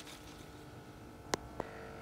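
Quiet room tone with a faint steady hum, broken once by a short sharp click a little past halfway and a softer click just after.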